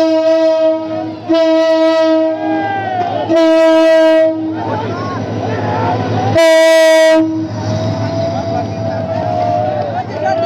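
Diesel locomotive's air horn sounding in four blasts, one tone each, the last a short blast about six and a half seconds in, over the low hum of the engine. A crowd of men shouts and cheers between the blasts and after them.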